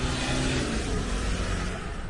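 Steady rushing noise of road traffic, with a faint low hum that fades out a little under a second in.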